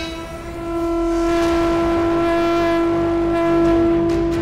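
A long, steady horn-like tone, rich in overtones, that swells up about a second in and is held loud to the end, sounding over a music bed.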